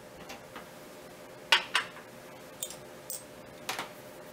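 Light metallic clicks and taps of small metal telescope-mount parts being handled as the slow-motion knob is taken off, about seven in all, the loudest pair about one and a half seconds in, over a faint steady hum.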